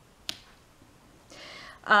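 A single sharp click about a third of a second in as a card is set down by hand, then a soft breath drawn in just before speech resumes.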